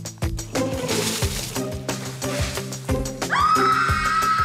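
Background music with a steady beat, over which water thrown from a bucket splashes for about a second, starting about half a second in. Near the end a loud, long, high-pitched held tone begins.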